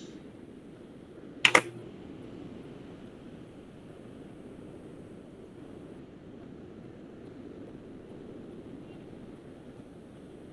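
Low steady background noise of an open microphone, broken once by a sharp double click about one and a half seconds in.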